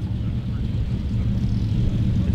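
An engine drones steadily at a low pitch.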